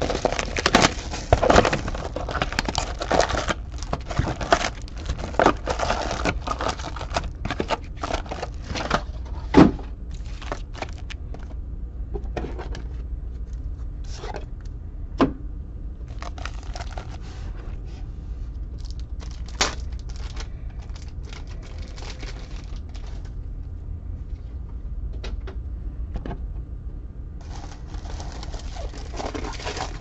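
A cardboard trading-card hobby box being opened and its foil-wrapped packs handled and stacked on a table: rustling, crinkling and tapping, busiest in the first ten seconds. A sharp knock comes about ten seconds in, then scattered clicks follow over a low steady hum.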